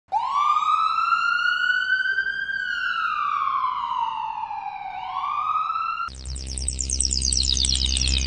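A siren wail: it rises quickly, holds high, falls slowly, then rises again. About six seconds in, it cuts to electronic music with a heavy bass.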